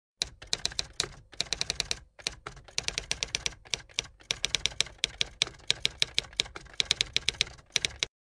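Typing sound effect: quick, irregular keystroke clicks, several a second, with a few short pauses. It stops abruptly at the end.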